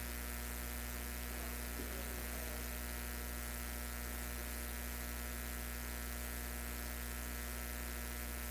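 Steady electrical mains hum: a low, even buzz with a stack of evenly spaced overtones, unchanging throughout.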